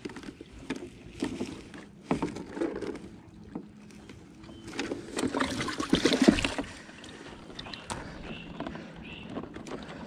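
Handling sounds of fish being taken out of a bag of ice water: scattered knocks and rustling, with a louder spell of sloshing and splashing water about five to six and a half seconds in as a bass is lifted out.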